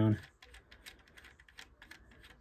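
Plastic LEGO winch knob and axle turned by hand, giving a string of quick, irregular clicks, about five or six a second, as the anchor string is wound.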